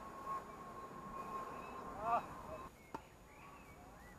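Tennis ball struck with a racket: a sharp pop at the start and another about three seconds in. Between them, about two seconds in, comes a short rising-and-falling call, the loudest sound.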